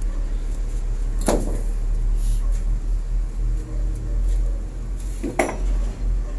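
Two sharp clattering knocks, about four seconds apart, over a steady low rumble, as of hard objects being dropped or struck on a building site.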